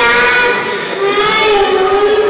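A young girl singing into a microphone, holding long notes and sliding between them.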